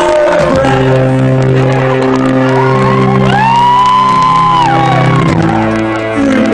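Live band music in a hall: sustained electronic keyboard chords, with a sliding tone that swoops up and back down in the middle, over crowd noise.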